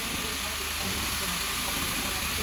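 Steady hiss of compressed air on a pressure-test rig for stainless steel vessels.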